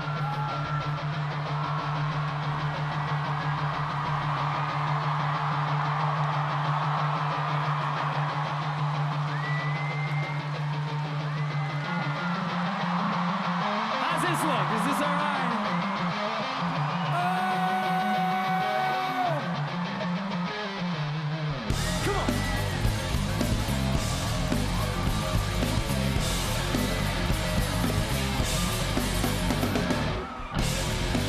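Rock band filler on stage: a held low synth or bass note under crowd noise and whistles. A few notes of melody come in about 12 seconds in, and the full band with drums and guitar kicks in about 22 seconds in.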